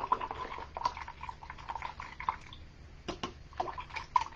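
A paintbrush rinsed in a water container, sloshing water with a few irregular light knocks against the container's sides as the black acrylic paint is washed out.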